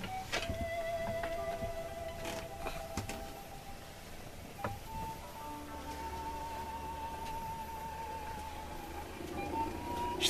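Hand-cranked milk separator being turned: a thin steady whine from its gearing and spinning bowl, wavering in pitch, with a click about midway. The whine climbs near the end as the bowl spins up to speed before the tap is opened to split cream from skim milk.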